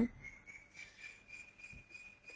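A faint, high-pitched steady tone, rising slightly in pitch.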